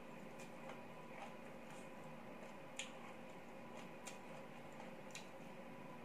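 Quiet eating sounds: a scatter of faint, unevenly spaced small clicks from chewing and from fingers picking through a plate of papaya salad and shrimp, over a steady low hum.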